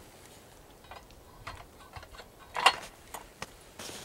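Lid of a camlockbox trail-camera security box being fitted onto the box: scattered light clicks and taps, with one sharper clack about two-thirds of the way in.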